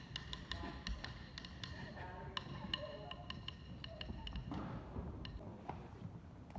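Wooden drumsticks tapping: a scattered run of sharp clicks, a few each second at an uneven pace, each with a short ringing tone.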